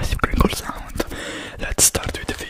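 Whispering close into a foam-covered microphone, with short clicks and a brief hiss near the end.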